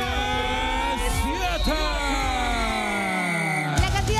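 A long electronic tone sliding slowly downward in pitch, a produced TV sound effect, with brief bits of voice over it. About four seconds in it cuts off suddenly and rock guitar music begins.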